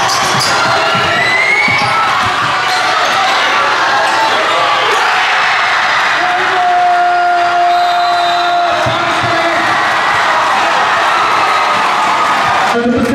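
Gym crowd cheering and shouting during a basketball game, with a basketball bouncing on the court. A long steady tone stands out above the crowd for about two seconds just past the middle.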